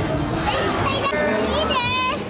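Children's voices and chatter, ending in a high-pitched child's cry shortly before the end.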